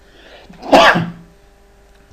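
A person sneezing once: a faint intake of breath, then one loud, sharp burst a little over half a second in.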